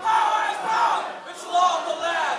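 A man shouting into a microphone through the PA, over a shouting crowd, in two long bursts; the band is not yet playing.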